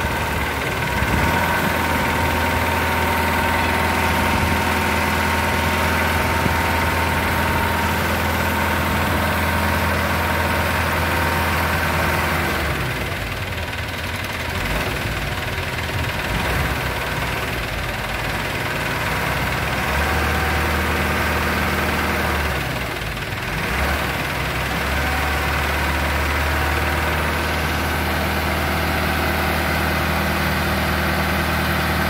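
Mahindra 475 DI tractor's four-cylinder diesel engine running steadily. Its deep note drops away for several seconds about halfway through and briefly again a few seconds later, then comes back.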